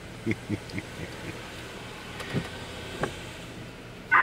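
Steady low hum of an idling car heard from inside its cabin, with a few short soft sounds in the first second and again near the end.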